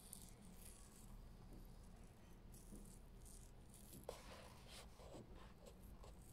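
Near silence with faint paper rustling as a paperback's page is handled, livelier from about four seconds in, where a small click stands out.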